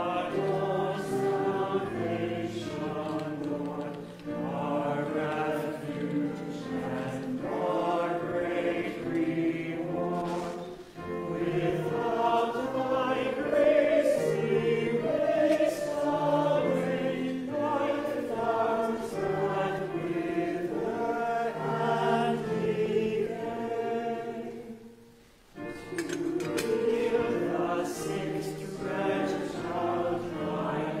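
Choir singing an offertory hymn in harmony, in sung phrases with a short break about twenty-five seconds in.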